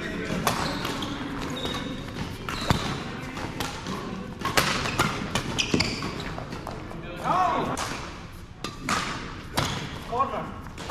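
Badminton rackets striking a shuttlecock during a doubles rally: a string of irregular, sharp cracks.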